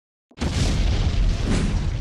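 Cinematic boom sound effect of an animated logo intro: it starts suddenly about a third of a second in and holds as a loud, deep rumbling hit.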